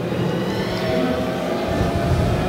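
Steady background din of a large event hall: a low rumble with a few faint held tones, picked up through the stage sound system.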